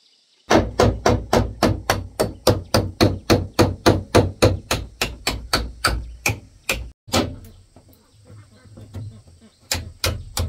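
Hammer driving a nail through a corrugated roofing sheet into a bamboo purlin, in quick steady blows of about four a second. The blows stop around seven seconds in, with one more strike just after, and start again near the end.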